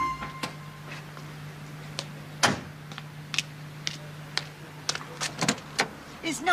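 Ford Escort car doors being worked: a string of clicks and knocks from the latches and handles, with one louder knock about two and a half seconds in, as a door is opened. A low steady hum runs underneath and cuts off near the end.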